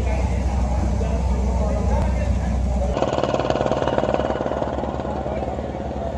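A low steady rumble, then from about halfway a tractor's diesel engine idling with a rapid, even chugging, under indistinct voices.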